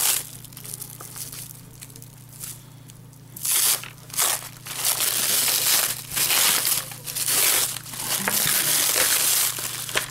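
Thin plastic shrink wrap crinkling and tearing as it is pulled off a package by hand. It is fairly quiet for the first few seconds, then comes in loud irregular bursts of crackling from about three and a half seconds in.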